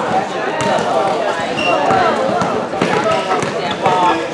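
Basketball bouncing on a gym floor, a few sharp separate thuds, under players' overlapping shouts and calls that echo in a large hall.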